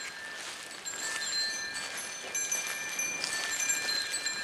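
Steady outdoor background hiss with faint, overlapping high-pitched ringing tones that come and go, like chimes.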